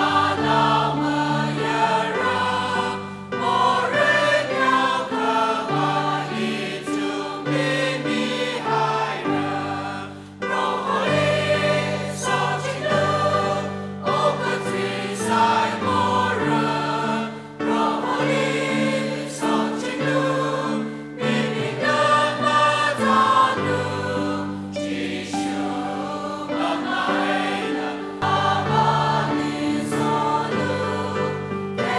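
A church congregation singing a hymn together, joined by a small group of singers, in sustained phrases with short breaks between lines.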